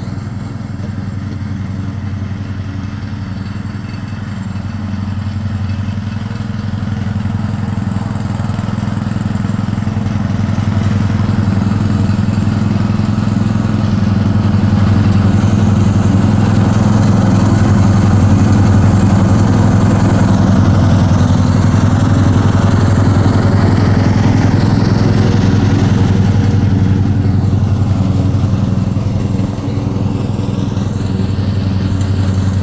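Lawn mower engine running steadily with a low hum; it grows louder through the middle and drops back near the end.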